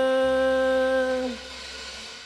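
Live rock band ending a song on one long held note, which stops about a second and a quarter in. A ringing cymbal wash is left over and fades away.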